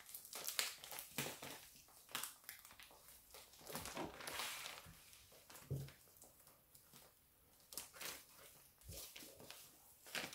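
Faint, irregular crinkling and rustling of a plastic grow bag being handled as a strap is looped and tightened around its top, with a few soft knocks.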